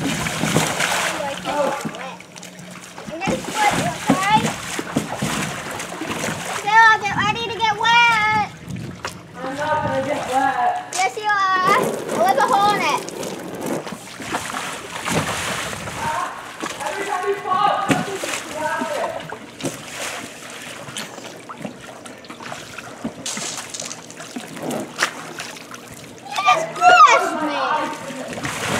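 Pool water splashing and sloshing as a child runs and stumbles inside a clear inflatable water-walking ball on the surface. Children's voices call out several times over it.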